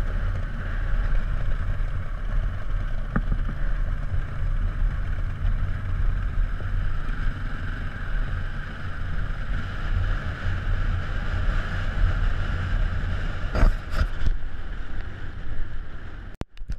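Four-stroke single-cylinder engine of a 2006 Beta RR450 trail bike running steadily as it is ridden along a dirt track, with wind on the microphone. A couple of sharp knocks come near the end.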